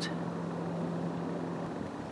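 A steady low hum over faint background noise, holding level throughout.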